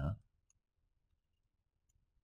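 The end of a spoken word, then near silence with two faint computer-mouse clicks, one about half a second in and one near the end.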